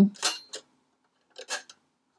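Faint handling noise of an Apple Disk II floppy drive, its metal and plastic case being turned over in the hands, with one short clatter about one and a half seconds in.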